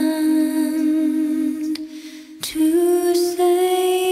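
Slow song in a lullaby style: a woman's voice holding a long note, a short break about halfway through, then a slightly higher long note.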